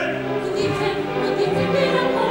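Operatic singing with a chorus over an opera orchestra, in held notes with vibrato.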